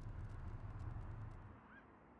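A car's low, steady engine and road rumble, which drops away about one and a half seconds in; a faint, short rising chirp follows near the end.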